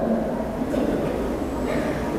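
A pause between words, filled by a steady low hum of room noise, with the tail of a man's drawn-out syllable fading right at the start.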